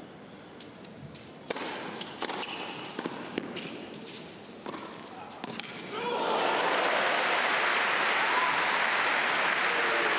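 Tennis rally: the ball is hit back and forth with sharp racket strikes and court bounces for about five seconds. About six seconds in, a large indoor crowd breaks into loud, sustained cheering and applause as the point is won.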